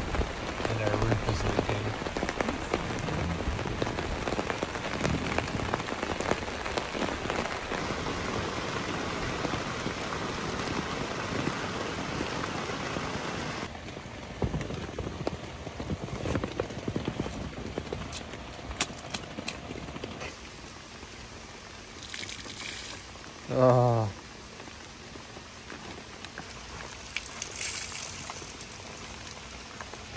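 Steady rain falling on a tent, heard from inside it. It is heaviest for about the first fourteen seconds, then lighter. A brief voice-like sound comes near the end.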